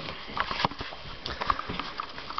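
Handling noise from a handheld camera being swung around close to its microphone: scattered small clicks and rustles.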